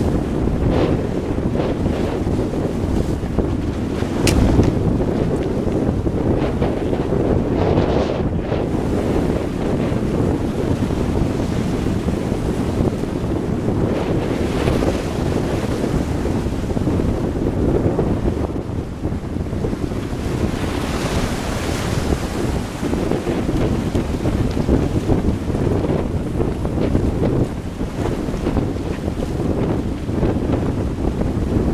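Wind buffeting the microphone over surf washing against jetty rocks, with the wash swelling and falling several times. A single sharp click about four seconds in.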